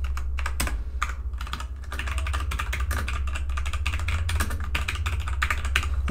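Typing on a computer keyboard: a quick, irregular run of keystrokes over a steady low hum.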